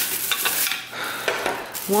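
Thin plastic shopping bag rustling and crinkling in irregular bursts as a hand rummages through it.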